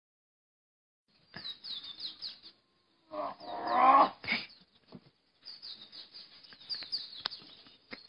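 Birds chirping in short, falling chirps, in two spells. Between them, a little over three seconds in, comes a louder pitched cry or strained vocal sound lasting about a second.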